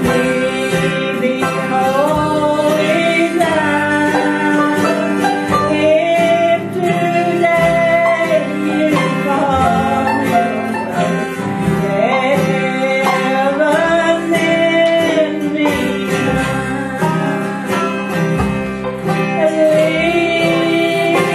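Live acoustic bluegrass-gospel band: a woman singing the lead melody over a picked banjo, a strummed acoustic guitar and a harmonica.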